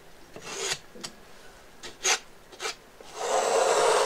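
Metal palette knife scraping and spreading paint across a stretched canvas. A few short strokes come first, then one longer, louder scrape from about three seconds in.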